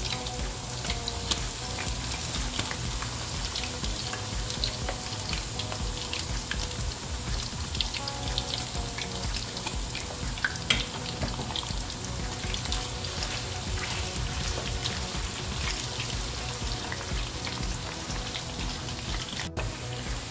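Thin potato slices deep-frying in hot oil in a frying pan: a steady sizzle with many small pops and crackles.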